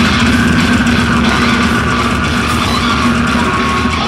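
Slam death metal band playing live and loud: heavily distorted guitars and bass over busy drumming, heard from within the crowd.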